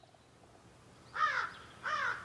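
A crow cawing twice, two short harsh calls about two-thirds of a second apart, over a faint background.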